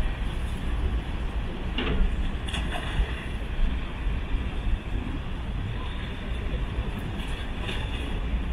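Wind buffeting the microphone: a steady, uneven low rumble, with a few short faint sounds from people nearby.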